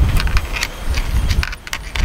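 Vinyl electrical tape being wound around loose wire ends, a run of irregular crackling clicks, over a low rumble that eases off after about a second and a half.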